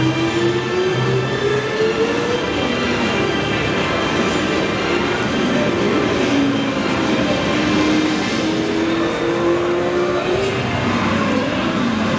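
Loud, steady exhibition-hall din with background music, its slow tones gliding up and down in pitch.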